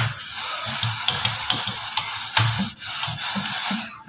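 A hand scrubbing a wet, tarnished silver tray: a steady scratchy rubbing with many small clicks as the tray shifts on the cloth, easing briefly about three and a half seconds in. The scrubbing lifts off tarnish loosened by the soak.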